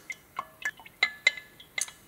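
A stirrer clinking against the side of a glass beaker while stirring oil by hand: about seven irregular, sharp clinks, each with a brief ring.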